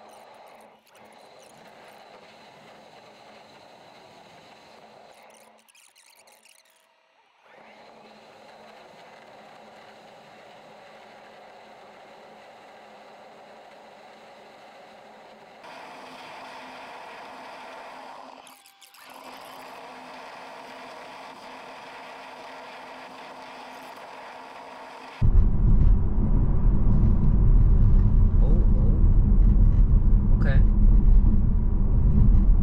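A faint steady hum with a couple of brief dropouts. About 25 seconds in it gives way abruptly to loud, low road and tyre rumble inside the cabin of a Tesla electric car on the move.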